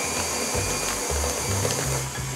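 Electric stand mixer running steadily while beating cake batter, under background music with a stepped bass line that starts just after the opening.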